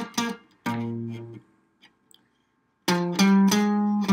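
Archtop guitar playing chords: two chords at the start, the second ringing for about a second, a short pause, then a quicker run of chord strokes near the end.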